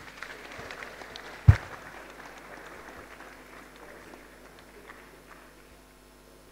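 Light audience applause that fades away over several seconds, with a single sharp thump about a second and a half in.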